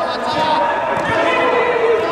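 A football thudding off players' feet a couple of times on artificial turf, with players' voices calling out. All of it echoes in a large inflatable sports hall.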